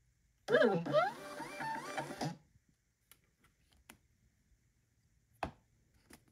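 LabelRange BT320 thermal label printer feeding out and printing a 4x6 shipping label. Its motor gives a whine that rises and then steps between pitches for about two seconds. A single sharp click comes near the end.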